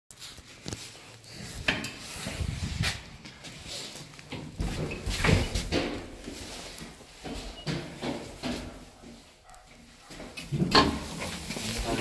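Irregular knocks and clicks of an elevator's doors and cabin button panel being worked, mixed with people's voices.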